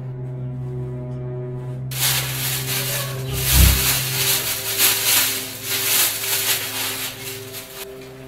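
Sustained background music notes, joined about two seconds in by loud, crinkly rustling of plastic rubbish bags being rummaged through by hand, with a low thud midway.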